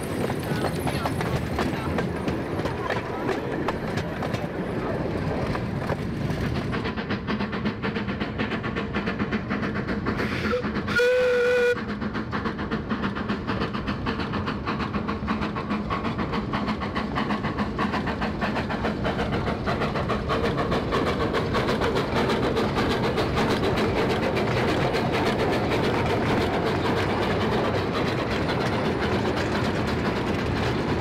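Miniature steam train with open passenger cars running along narrow-gauge track, its wheels clattering steadily on the rails. About eleven seconds in, the locomotive sounds one short steam-whistle blast on a single steady note.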